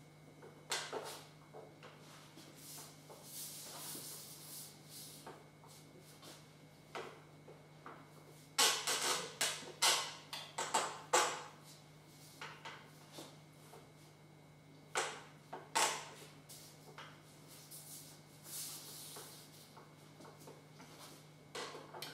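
Handling noises as a cake tier and its board are set onto a stacked cake on a turntable: scattered light clicks and knocks with soft rustling. A quick run of clicks comes about eight to eleven seconds in, and a faint steady low hum runs underneath.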